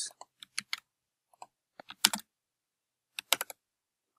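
Computer keyboard being typed on in short, irregular spurts of key clicks with pauses between them. The loudest run comes a little after two seconds in, and the clicks stop about three and a half seconds in.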